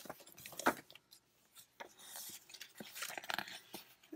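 Pages of a ring-binder junk journal being turned by hand: paper rustling and brushing, with a few soft taps of paper against the binder.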